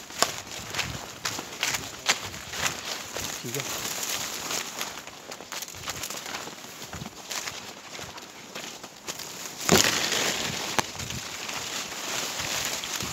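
Leaves and branches rustling and snapping as someone pushes through dense undergrowth on foot, with uneven crackles and footsteps throughout. About ten seconds in there is a sudden loud burst of rustling.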